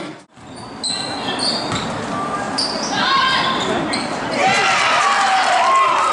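Live gym sound of a girls' basketball game: the ball bouncing on the hardwood court, short high sneaker squeaks and voices calling out. It cuts in after a brief gap near the start.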